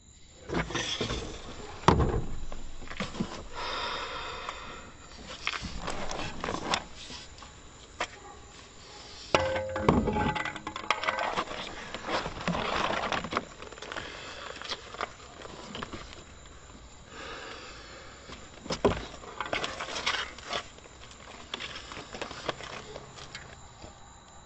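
A run of irregular thuds, knocks and scraping. The sharpest knocks come about two seconds in, around ten seconds and just before nineteen seconds.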